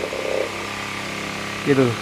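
Rechargeable 12 V DC table fan running steadily on its newly fitted battery, a constant motor hum with the rush of air from the blades. It shows the fan now works in battery backup mode. A man's voice comes in near the end.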